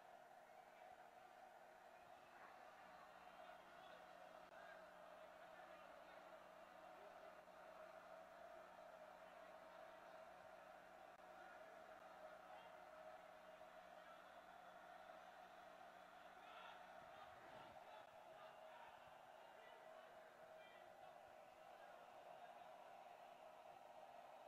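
Near silence: a faint, steady background hum with nothing standing out.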